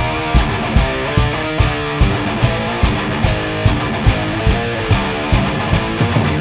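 Metal band playing live: distorted electric guitar riff over drums, with the drum hits landing on a steady beat of about two to three a second and cymbals over them.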